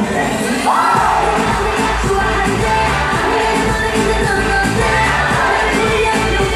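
K-pop dance-pop song by a girl group: female vocals over a steady backing track with heavy bass, which drops out for a moment about a second in.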